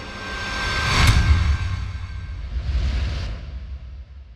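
Cinematic logo-intro sound design: a rising whoosh builds to a sharp hit with deep bass rumble about a second in. A second airy swell follows and fades out near the end.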